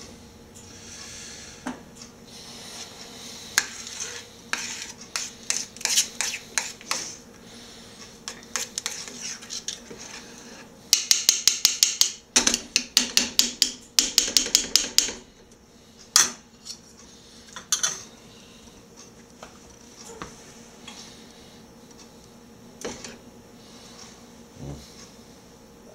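Metal utensil scraping and clicking against a stainless steel skillet while stirring a thick white sauce. Scattered taps, then a fast run of clicks for about four seconds around the middle, then a few more taps and a quieter stretch.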